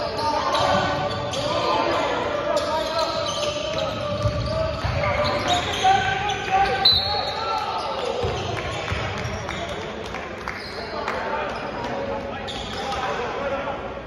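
Basketball game sound in a large gym: the ball bouncing on the hardwood court amid voices calling out, with a brief high squeak about seven seconds in.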